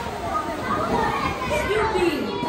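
Indistinct children's voices chattering and calling out, several overlapping at once, in an echoing enclosed space.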